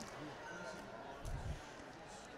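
Faint ice-rink ambience: distant voices of players and spectators echoing in the arena, with a dull low thump about one and a half seconds in.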